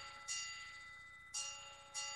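A bell-like chime: a chord of ringing tones struck three times, each strike fading away.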